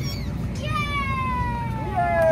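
A young child's long, high-pitched squeal that glides steadily down in pitch, starting a little way in and carrying on past the end, over a low background hubbub.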